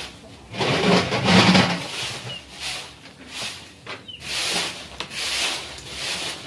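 Rough scraping or rubbing strokes, uneven and roughly one a second, the longest and loudest about a second in.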